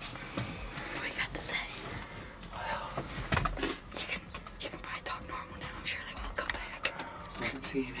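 A person whispering quietly, with a few faint clicks in between.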